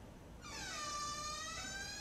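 A buzzy, horn-like tone begins about half a second in, sags slightly in pitch and rises again, then cuts off abruptly.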